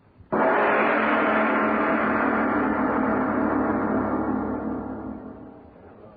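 A single gong stroke, struck about a third of a second in and left to ring, dying away gradually over about five seconds: a sound-effect bridge marking a scene change in an old radio drama.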